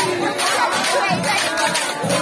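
Group of women singing and shouting in a Bihu dance, their many voices mixed over a steady percussion beat of about four strokes a second.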